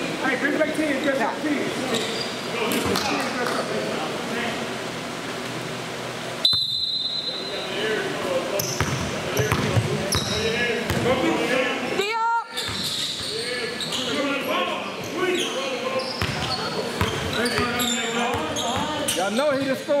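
Overlapping voices and chatter echoing in a large gym, with a basketball bouncing on the hardwood floor. A short, sharp high tone sounds about six and a half seconds in.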